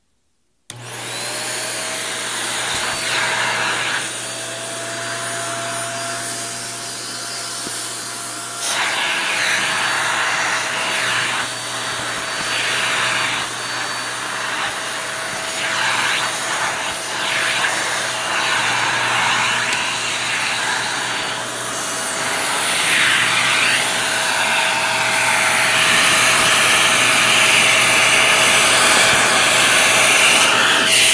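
Shark handheld vacuum switched on about a second in, its motor spinning up to a steady whine over a low hum. It then runs continuously with rushing suction airflow that shifts in level as the hose tool is moved about, growing louder near the end.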